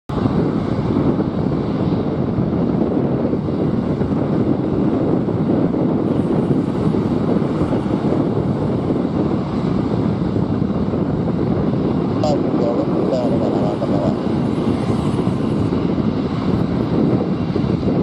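Jet engines of an Airbus A330 freighter taxiing, running steadily with a low, even rumble.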